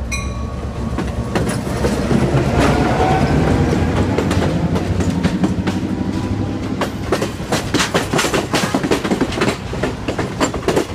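A rebuilt EMD GP9u diesel locomotive passes close by with its engine running, then passenger coaches roll past with their wheels clicking over the rail joints. The clicking grows thicker and louder in the second half.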